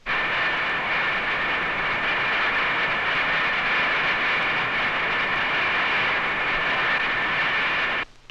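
Avro ejector wind tunnel running: a steady airflow rush with a high whine in it. It starts abruptly and cuts off abruptly near the end.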